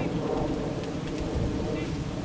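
Wind buffeting the camera's microphone: a steady low rumbling noise.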